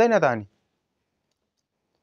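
A man's voice speaking for about half a second, its pitch falling, then cut off abruptly into dead digital silence for the rest.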